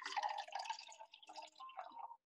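Water poured from a glass jar into a glass tumbler: a thin stream trickling and splashing into the glass, faint and uneven.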